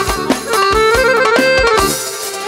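Live band playing instrumental folk dance music: kanun and electronic keyboards on the melody over a steady drum-kit and hand-drum beat.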